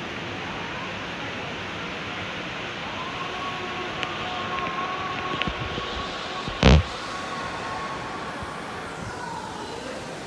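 Steady background noise of an aquarium viewing area, with a faint held tone through the middle and one short, loud thump about two-thirds of the way in.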